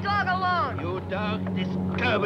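High, falling vocal cries, several in quick succession, over a steady low hum, during a scuffle over a dog.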